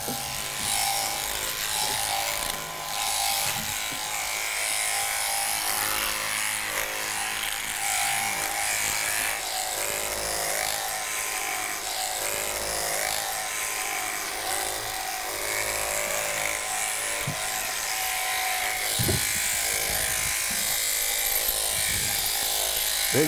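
Handheld electric sheep-shearing clipper running steadily, buzzing as it cuts through a sheep's fleece, with a couple of brief low thuds in the last few seconds.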